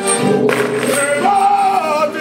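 Singing with instrumental accompaniment and a tambourine, the voices holding long notes that rise and hold in the second half.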